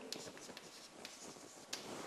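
Chalk writing on a blackboard: faint scratches and taps as an equation is written, with a sharper tap about three-quarters of the way through.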